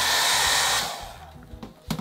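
A short, loud burst of rushing, hissing noise that fades out after about a second.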